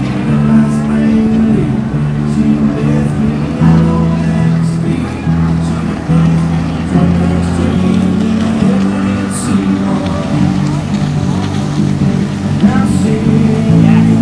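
Music with a steady bass line, over the running engines of racing jet skis.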